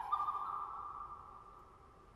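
A soprano voice holding one high, almost pure note that fades away over about a second and a half, leaving a long church reverberation.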